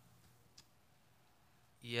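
Quiet room tone with one faint, brief click about half a second in, then a man's voice begins near the end.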